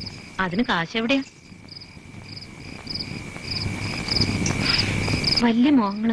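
Crickets chirping in short, regular pulses about two to three times a second over a steady high insect trill. A hiss swells up under them and cuts off suddenly near the end.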